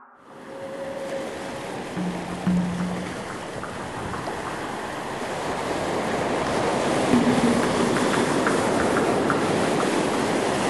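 Ocean surf: a steady rushing of breaking waves that grows gradually louder, with a few faint held tones over it.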